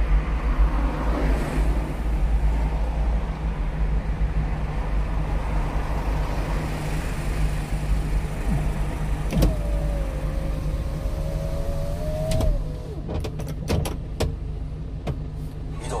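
Inside the cab of a 1-ton truck stopped in traffic, the engine idles with a steady low drone. About nine seconds in, an electric motor whines for about three seconds, rising slightly in pitch, like a power window being run. A few sharp clicks follow near the end.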